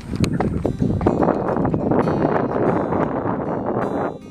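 Strong wind buffeting the microphone in ragged gusts, a loud rough rush that cuts in suddenly at the start.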